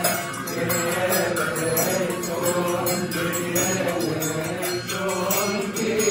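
Coptic liturgical hymn chanted by a group of voices, the held notes of the melody going on steadily.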